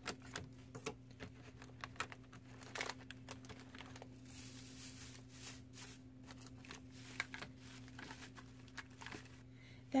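Shredded crinkle-paper filler rustling and plastic toiletry bottles and packages clicking and tapping as they are lifted and set back in a plastic basket: a scatter of light crackles and taps, with a brief softer rustle about four seconds in. A faint steady hum lies underneath.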